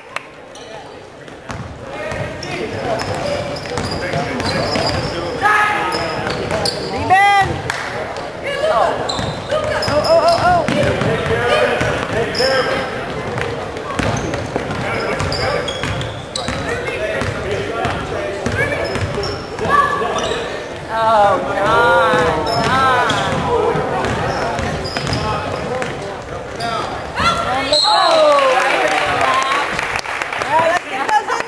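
Basketball game on a hardwood gym court: a ball bouncing with repeated thuds throughout, mixed with the calls and voices of players and spectators.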